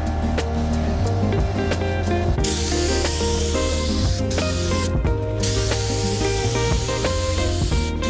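Compressed-air gravity-feed paint spray gun hissing as it sprays primer, starting about two and a half seconds in and running in long bursts with short breaks. Background music with a steady bass plays throughout.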